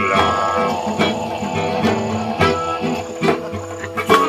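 Live acoustic band playing an instrumental passage without vocals: acoustic guitar and djembe hand-drum strokes under held melodic notes.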